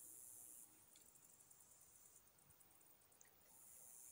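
Near silence: faint outdoor ambience, with a faint high hiss at the start that fades out and comes back near the end.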